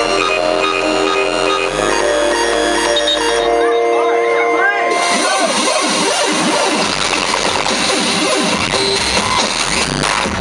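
Live electronic DJ set: a repeating synth melody over a bass line, with the top end cut away about three and a half seconds in. About five seconds in, a dense noisy wash full of quick swooping pitch sweeps takes over.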